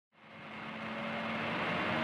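A rushing, airy swell with a faint steady hum, fading in from silence and building steadily louder, like an aircraft-style whoosh laid over an intro.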